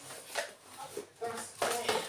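Brief handling noises: a few light knocks and rustles as a cardboard gift box and tissue paper are moved about.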